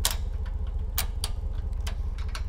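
Sharp metal clicks from a travel trailer's coupler latch being latched onto the hitch ball and locked: one click right at the start, then three more over the next two seconds, over a steady low rumble.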